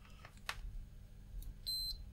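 Multimeter in diode-test mode giving a single short, high-pitched bleep near the end as the probes meet a Schottky diode's junction. The single bleep signals a good forward-biased semiconductor junction, with the voltage drop shown on the display. A faint click of probe on lead comes about half a second in.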